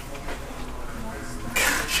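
Speech: quiet voices with a louder burst of voice near the end.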